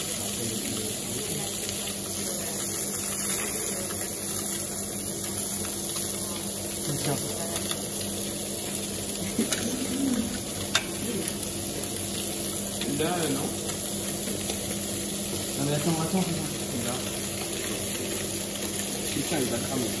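Steady professional-kitchen background noise: an even hiss with a low hum, a few light clicks of utensils against metal and plate, and faint voices.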